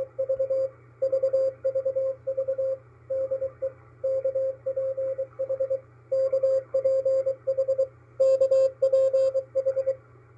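Morse code from the KPH maritime coast station received on shortwave: a keyed tone of about 550 Hz, rapidly on and off, over steady receiver hiss and a low hum. It is sending 'VVV VVV DE KPH', the station's marker and call sign.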